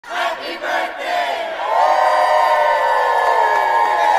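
Crowd cheering: many voices in short shouts at first, then about a second and a half in a drawn-out cheer that swells and holds.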